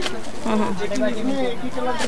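People talking, with the words not clear.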